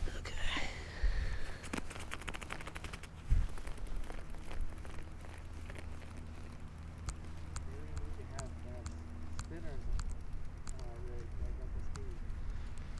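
Wind noise on the camera microphone, with a quick run of small clicks and then a single thump about three seconds in, and a faint voice later on.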